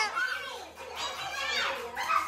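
Several women's voices in playful, excited chatter, with a short high cry that falls in pitch about one and a half seconds in.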